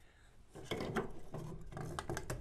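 Planter seed plates being handled: soft, irregular rubbing and light clicking that starts about half a second in.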